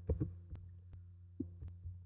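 About five short, separate clicks from computer keys or a mouse being pressed while code is edited, over a low steady hum.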